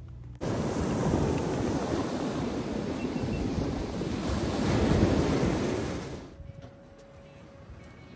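Ocean surf breaking and washing over lava rocks, a steady rush that swells about five seconds in and then drops away suddenly about a second later.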